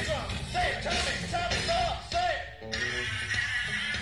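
Live funk band playing, with a lead line of short, repeated swooping notes over the band for the first two and a half seconds, then a brief drop before the band comes back in full.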